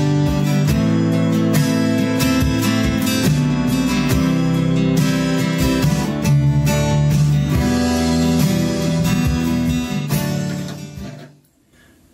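Six-string Ovation acoustic-electric guitar strummed with a pick, full chords ringing in a steady rhythm, then dying away near the end.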